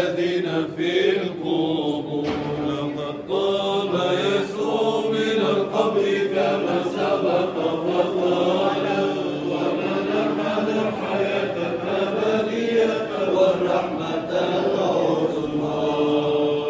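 Men's voices chanting a Byzantine Orthodox Easter hymn together, with long held notes that move slowly in pitch, sung without a break.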